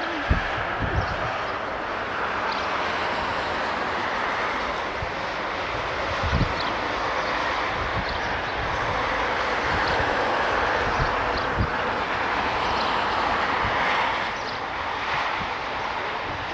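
Boeing 747-8F freighter's four GEnx turbofan engines at high power during its take-off roll toward the listener. A steady, broad jet rush builds slowly to a peak about fourteen seconds in, then eases off. A few low thumps stand out, the strongest just after the start.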